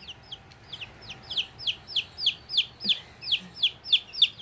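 Baby chicks peeping: a steady run of short, high notes, each falling in pitch, about four a second, getting louder from about a second in.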